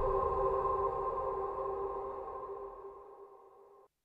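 Sombre background music ending on a long held chord that slowly fades out and stops just before the end.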